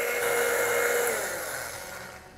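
Countertop blender pureeing cooked nettles. Its motor whine drops in pitch about a second in and the sound fades as the blender spins down.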